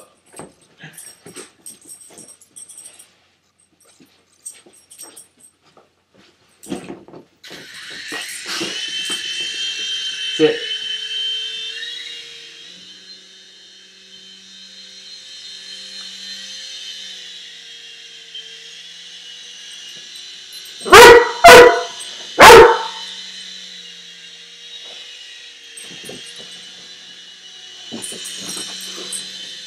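A small electric remote-control toy helicopter's motor and rotor starting up about a quarter of the way in and running on as a steady high whine. Later a Weimaraner puppy barks three times in quick succession at it; the barks are the loudest sounds.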